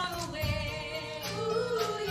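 Female voices singing a musical-theatre number live on stage over an instrumental accompaniment, holding notes that waver with vibrato.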